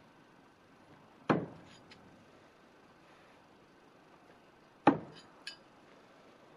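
Two throwing knives striking the wooden log-round target, two sharp hits about three and a half seconds apart, each with a short ringing tail; a lighter click follows the second hit.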